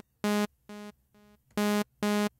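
Short saw-wave notes from Arturia Pigments' analog synth engine, each followed by pitch-shifting-delay echoes about half a second apart that grow quieter. A new note with its echoes starts about one and a half seconds in. The delay's stereo offset is at zero, so the repeats sound very mono.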